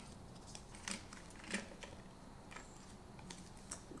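Faint clicks and rustling of a small box of adhesive bandages being handled and a bandage taken out, with a few scattered sharp ticks.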